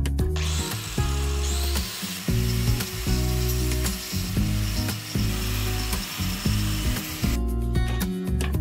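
DeWalt angle grinder fitted with a sanding disc, running against wood as a steady high hiss that starts just after the beginning and stops a little before the end. Guitar music plays underneath throughout.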